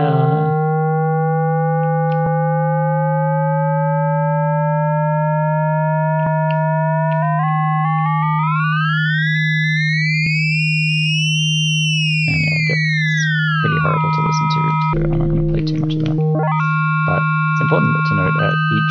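Dirtywave M8 tracker's FM synth holding a steady low note while the frequency ratio of one operator is dialled through values. The overtones above the note glide slowly upward, then sweep up steeply to a peak about eleven seconds in and back down. Near the end they jump in steps, with gritty noisy patches.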